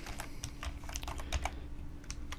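Computer keyboard typing: a quick, uneven run of about a dozen keystrokes as a short word is typed.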